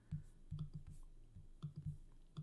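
Faint, irregular clicks, about seven in two seconds, from a computer mouse clicking through colour swatches in an editor.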